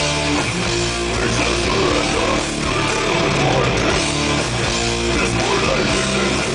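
Death metal band playing live: distorted electric guitars, bass and drum kit at loud, steady volume, heard from the crowd through the stage PA.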